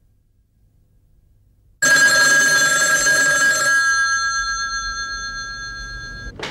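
Telephone bell ringing: a sudden loud ring about two seconds in, rattling for about two seconds, then its ringing tones slowly fade.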